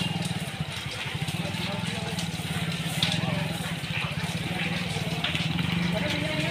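An engine idling steadily with a fast, even pulse, with indistinct voices of people talking in the background and an occasional sharp crack.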